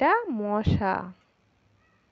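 A single drawn-out vocal call, like a meow, that rises and then falls in pitch and ends about a second in.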